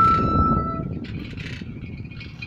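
A quena (Andean notched cane flute) holds one long note that stops about a second in, over a low rumbling noise that fades away.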